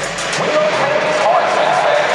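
Voice from a stadium's public-address speakers, echoing through a large domed arena over steady crowd chatter.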